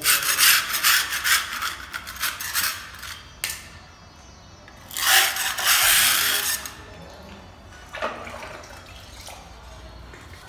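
A hand rubbing wet gypsum filler into the joint along the top edge of a gypsum cornice strip, a scratchy rubbing in quick strokes. It runs for the first three seconds, comes again from about five to six and a half seconds in, and there is a short scrape near eight seconds.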